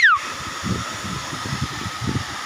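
Waterfall rushing steadily, a continuous hiss-like roar. A loud whistle sliding down in pitch ends just after the start.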